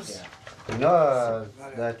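A man's voice: a long drawn-out syllable with a pitch that rises and falls, then a short syllable near the end.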